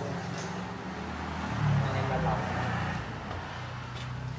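Steady low engine hum of road traffic, a little louder for about a second midway, with faint voices.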